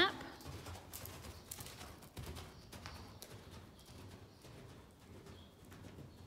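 Faint hoofbeats of a horse cantering on the soft dirt footing of an indoor arena: scattered dull thuds with a few light clicks.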